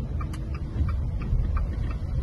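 Low rumble inside a car's cabin, with a regular light ticking about four times a second.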